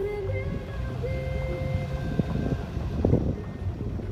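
Car driving over a rough, potholed dirt road: a steady low rumble of tyres and engine, with two knocks from the rough surface about two and three seconds in. Background music with held notes plays over it.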